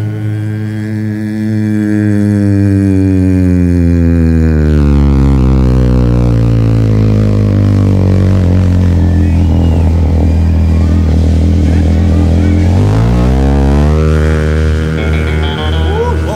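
A deep bass voice singing the closing 'Amen' of a gospel ending. It slides steadily down to an extremely low note over several seconds, holds it, then climbs back up near the end, with the band sustaining underneath.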